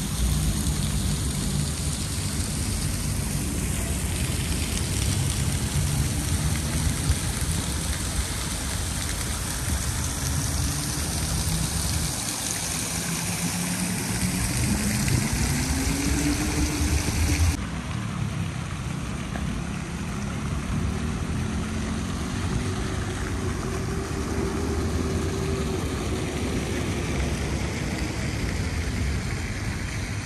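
Fountain jets splashing into a shallow stone pool, a steady hiss of falling water, with city traffic running underneath and vehicle engines rising and falling in pitch as they pass. The high hiss drops abruptly a little past halfway.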